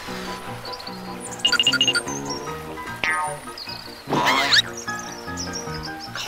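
Cartoon background music with held notes, overlaid by squeaky cartoon sound effects: a quick run of chirps about a second and a half in, a falling glide about three seconds in, and a louder rising whoop about four seconds in.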